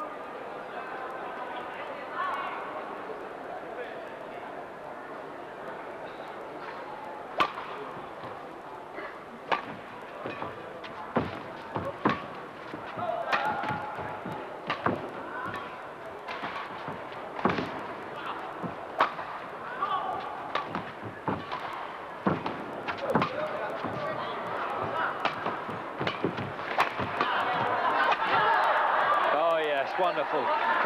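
Badminton rally: sharp cracks of racquets hitting the shuttlecock at irregular intervals, about a second apart, over the murmur of an arena crowd. The crowd noise swells near the end as the rally closes.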